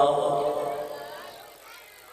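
A male reciter's long held chanted note ends and fades away over about a second and a half, its echo dying out, leaving only faint background voices.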